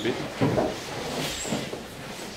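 Indistinct speech with a few knocks and bumps of objects being handled.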